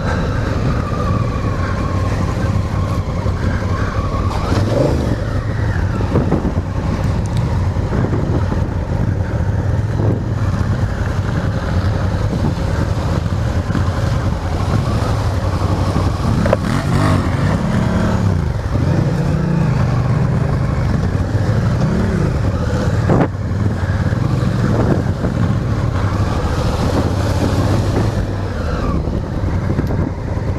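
Honda Africa Twin's parallel-twin engine running as the bike is ridden over a gravel forest track, its note rising and falling with the throttle, mostly in the middle of the stretch, with a few short knocks along the way.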